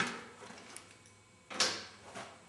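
Mountain bike tire being worked off its rim by hand: two short bursts of rubber and wire bead rubbing over the rim edge, the second, louder one about a second and a half in.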